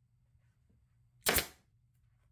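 Pneumatic upholstery stapler firing once about a second in, driving a staple through vinyl: a single sharp crack that trails off quickly.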